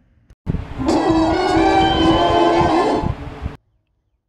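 Short music sting marking a scene transition: a held, many-toned chord about three seconds long that slides up into pitch at the start and drops away near the end, then cuts off suddenly.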